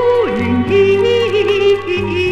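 Instrumental break in a 1970s Mandarin pop ballad: a lead melody with wide vibrato slides down near the start, then holds over sustained bass notes and chords.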